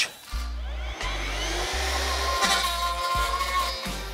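Background music with a stepping bass line, over the electric motor and metal blade of a Greenworks 48-volt cordless brush cutter spinning up with a rising whine that then holds steady at speed.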